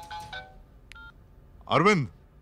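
Mobile phone keypad beeps as a number is dialed, stopping about half a second in, then one short electronic tone from the phone. Near the end a man's voice comes in, answering the call.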